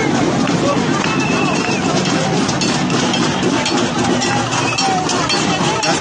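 A crowd of protesters, many voices shouting at once, loud and continuous, with no single voice standing out.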